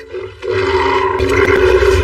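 Animated-film soundtrack: a loud creature roar with a deep rumble starts about half a second in and carries on, over the film's score.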